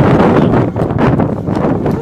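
Loud wind blowing across the microphone, rising and falling with the gusts.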